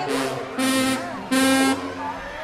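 Three short, loud horn blasts in quick succession, each held on one steady pitch for under half a second, with crowd voices between them.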